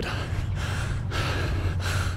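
A runner breathing hard through the mouth, gasping for air while he recovers from a hard 1 km interval rep.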